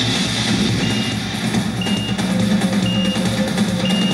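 Electronic countdown-timer beeps: three short high beeps about a second apart, then a long beep starting near the end, over background music with a beat.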